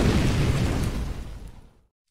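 Explosion-like boom sound effect of an intro logo sting, a dense rumbling noise dying away steadily over about a second and a half to silence.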